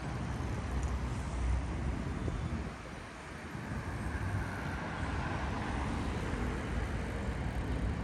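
Steady city road traffic, with engine rumble and tyre noise. A car passing close swells in the middle of the clip, about four to five seconds in.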